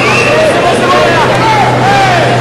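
Arena crowd noise: a dense din of spectators with several voices calling out over it during a judo groundwork exchange, and a steady low hum underneath.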